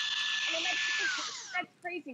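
Shark WandVac cord-free handheld vacuum running with a steady high whine over rushing air, then switched off about a second in, its motor winding down with a falling whine that stops about half a second later.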